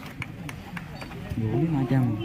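Men's voices talking, faint at first and turning into clear close speech a little past halfway, with scattered sharp clicks.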